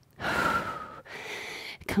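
A woman breathing hard through the mouth from the effort of an arm balance: a strong breath of about a second, then a softer one.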